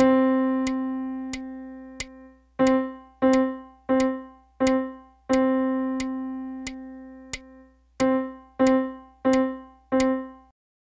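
Piano playing middle C in a rhythm drill: a whole note held for four beats, then four quarter notes, the pattern played twice. A faint click marks each beat while the whole notes ring.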